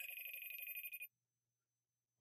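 A phone ringing for a call: a single ring about a second long, with a fast trill, that stops abruptly.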